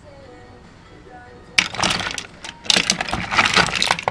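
Small drone parts (circuit boards, motors and wires) clattering and rattling as a hand rummages through a bowl of them. The rattling starts about one and a half seconds in and goes on in dense, irregular clicks.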